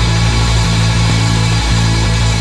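Loud rock music intro: distorted electric guitars holding one steady chord.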